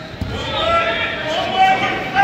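Coaches and spectators shouting, with long held calls, and a single dull thump on the mat about a quarter second in.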